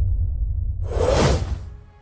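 Intro logo sound design: a deep low rumble that fades out, with a whoosh sweeping through about a second in.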